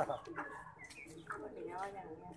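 Young Aseel chickens clucking and calling in short pitched notes, with one sharp click right at the start.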